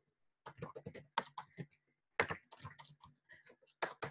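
Typing on a computer keyboard: a quick run of keystrokes in uneven bursts, with a short pause a little under two seconds in.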